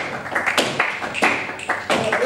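Flamenco palmas and footwork in a soleá: sharp hand claps and shoe strikes on the stage, unevenly spaced, about three a second.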